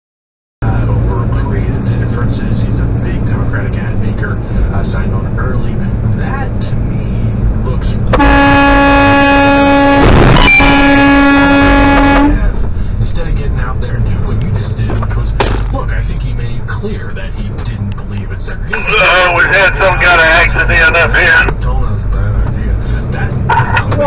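Inside a truck cab, the engine drones steadily over road noise, then a truck air horn sounds for about four seconds as one steady blast, with a sharp crack partway through it.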